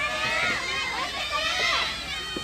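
Many high-pitched girls' voices shouting and calling over one another at once, the calls of players and supporters at a soft tennis tournament.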